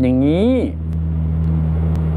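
A man's single drawn-out word with a rising then falling pitch, over a steady low hum that carries on alone once he stops, about two-thirds of a second in.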